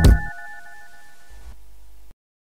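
Experimental music for mobile phone and drums: a last drum hit just after the start, then the phone's thin, beeping electronic melody of short, steady tones carries on alone, much quieter.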